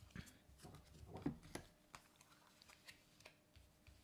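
Faint soft slides and light taps of oracle cards being dealt face down onto a table, a small cluster in the first second and a half, then a few scattered ticks.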